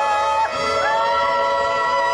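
A woman singing long held notes into a microphone over instrumental backing, in a Ukrainian folk style. About half a second in the note breaks off briefly, then her voice slides up into a new note and holds it.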